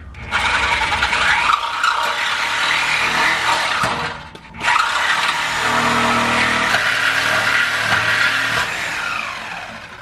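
Corded reciprocating saw cutting through a steel truck exhaust pipe, a steady loud rasping buzz. It cuts out briefly about four seconds in, starts again and fades down near the end.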